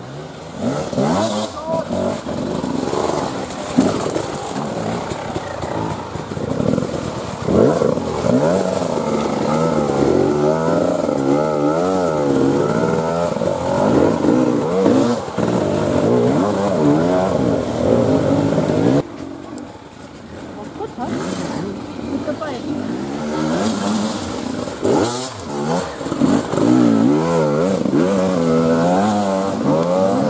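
Enduro motorcycle engines revving hard on and off the throttle, the pitch rising and falling quickly as the riders pick their way through rough, muddy trail. About two-thirds of the way in, the sound drops briefly and then another bike's revving takes over.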